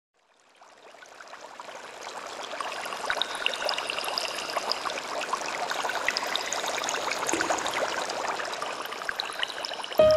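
Running water like a stream, with many small splashes and drips, fading in over the first two or three seconds and then flowing steadily.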